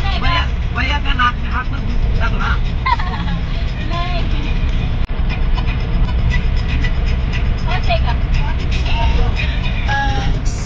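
Steady low rumble of a car's engine and tyres heard from inside the cabin while driving at speed, with voices or singing rising over it now and then.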